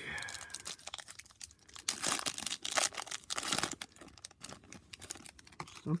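Foil wrapper of a 2022 Topps F1 trading-card pack being torn open and crinkled by hand: a steady run of crackles and rustles.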